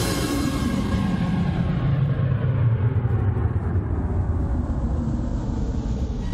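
Trance music in a breakdown: the beat drops out and a rumbling noise sweep falls steadily in pitch and fades away.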